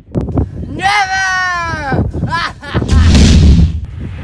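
A loud, low rumbling explosion boom, an added sound effect, comes in about three seconds in and is the loudest sound here. Before it a child's voice gives a long, high shout of "Never!" and a short "no!".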